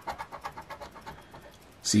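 A copper penny scratching the coating off a scratch-off lottery ticket in rapid short strokes, a quick run of scrapes that thins out near the end.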